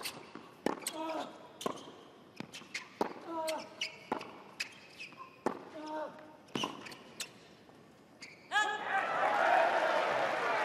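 Tennis ball struck by rackets in a rally on a hard court, a sharp pock about every second, with a player grunting on several shots. About eight and a half seconds in, a player shouts and the crowd breaks into loud applause and cheering as the point is won.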